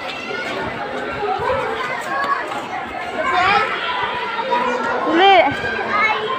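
Many children's voices chattering and calling out at once, with a single high rising-and-falling shout a little past five seconds in.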